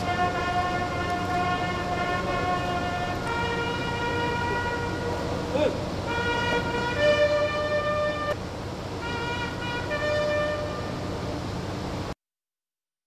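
Slow military lament played on a wind instrument: long held notes that step from one pitch to the next, with brief breaks between phrases. A steady low hum runs underneath.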